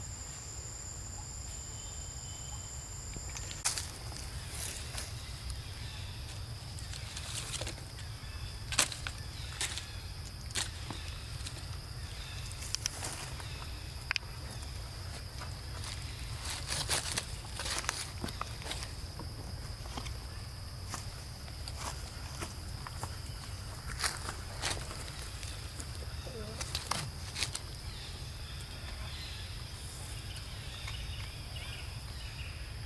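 Forest ambience: a steady high-pitched insect drone, with a second, higher insect tone that cuts off about three and a half seconds in. Scattered light clicks and rustles come and go over a low steady rumble.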